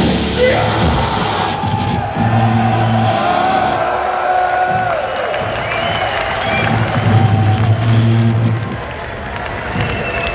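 Death metal band playing live through a loud PA, with an electric guitar holding and bending a high note that drops away about five seconds in. A festival crowd cheers along.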